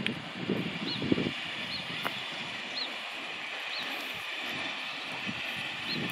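Steam locomotive No. 761 drawing slowly into a station, a steady hiss and low running sound with a single sharp click about two seconds in. Short high chirps repeat about once a second over it.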